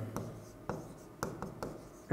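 Pen writing on an interactive board's screen: faint scratching with about four light taps as the strokes are made.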